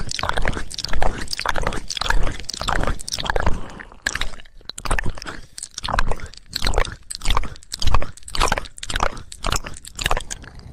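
Close-miked ASMR trigger sounds: a rapid, uneven run of short strokes, about two to three a second.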